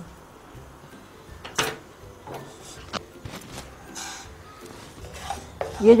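A few separate clinks and knocks of a cooking utensil against a non-stick kadhai while dry spice seeds are handled. The sharpest knock comes about one and a half seconds in, with a short dry rustle about four seconds in.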